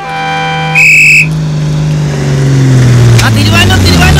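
A bus horn sounds for under a second and ends in a short, loud, high-pitched blast. The bus's engine note then falls slowly as it slows to a stop.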